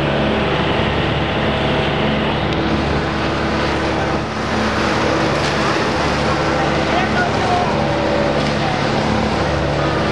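Motorboat engine running at a steady speed, over a constant rush of water and wind noise.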